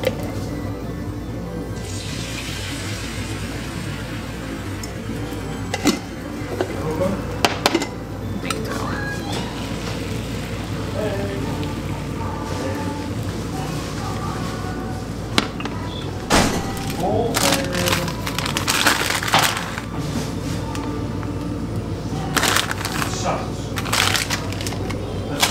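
Batter sizzling in a hot flat frying pan, with a few sharp clicks and scrapes of a spatula and utensils against the pan; music plays underneath.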